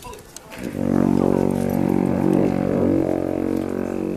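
Two alphorns playing together: after a brief break, a long low note starts about a second in and is held steadily.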